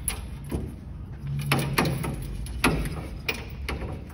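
Camper tent poles being unclipped and slid out of their fittings: a handful of sharp, irregular knocks and clicks.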